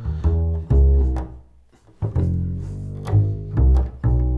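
Double bass plucked pizzicato, playing a short fill of low ringing notes. About a second and a half in, the sound drops away briefly before more notes follow.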